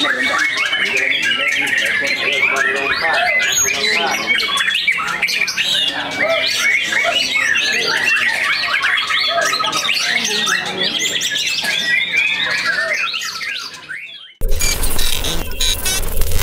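Young white-rumped shama (murai batu) singing a long, rapid song of quickly changing phrases, fading out about fourteen seconds in. Drum-heavy music starts just after.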